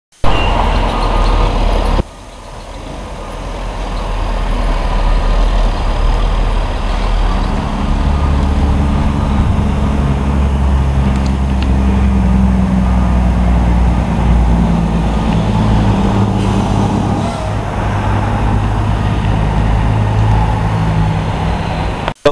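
Motor vehicle engine running amid street traffic noise. The sound changes abruptly about two seconds in, then a low engine hum builds and holds steady from about seven seconds, shifting pitch now and then.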